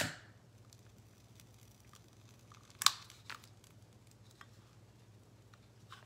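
Paper crinkling and crackling as the edge of glued decoupage paper is burned with a utility lighter flame: one sharp crackle about three seconds in and a smaller one just after, with a few faint ticks over quiet room tone.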